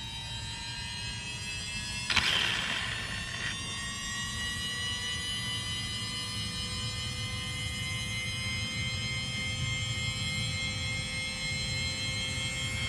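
Steady high electric whine from the Losi Promoto-MX RC motorcycle's spinning flywheel, several tones at once, creeping slightly upward in pitch. A brief rushing noise cuts in about two seconds in and lasts about a second and a half.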